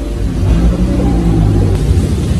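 Car engine running and revving under load through deep flood water, over a heavy low rumble; the engine note lifts a little in pitch partway through.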